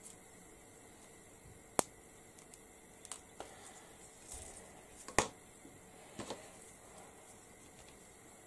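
Sharp plastic clicks and light taps from a glue syringe and card being handled on a tabletop, with soft handling noise in between. Two louder clicks come about two seconds and five seconds in.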